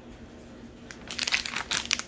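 Thin plastic candy packets crinkling as they are handled, a dense rapid crackle starting about halfway through.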